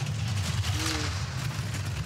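Four-man bobsleigh sliding down the ice track: a steady low rumble from its steel runners on the ice.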